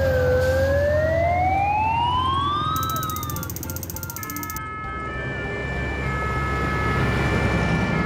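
Cartoon fire truck siren sound effect, one wail rising slowly in pitch over about three seconds and then fading, over a low engine hum. After a short whoosh, steady siren-like tones follow that change pitch about once a second, for the ambulance.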